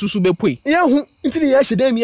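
Lively, sing-song speech from a radio drama's voices, with a short pause about a second in, over a steady high-pitched tone.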